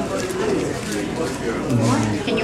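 Indistinct restaurant chatter: voices murmuring around the table, with a short, low hummed tone from a deep voice near the end.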